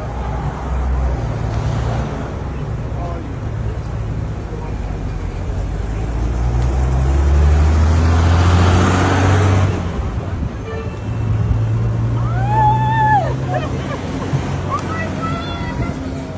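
Roadside traffic noise: a continuous low rumble of vehicles that swells loudest about seven to ten seconds in as a vehicle passes, then drops back. A short high call that rises and falls comes about thirteen seconds in, over faint voices.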